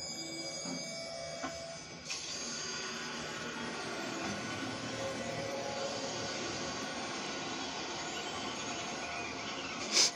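A steady rushing roar of surf with music underneath, played through a television's speaker.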